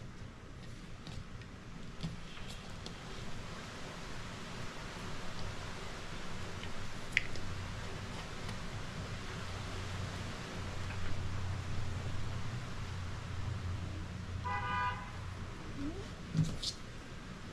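A low steady rumble comes in from about halfway through, and near the end a short pitched toot lasts about half a second. Faint light clicks come and go.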